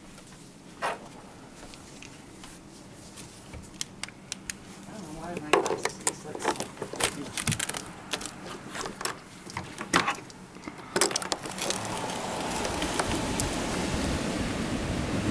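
A run of sharp clicks and small rattles, as of something being handled, then from about twelve seconds a steady rushing noise that slowly grows louder.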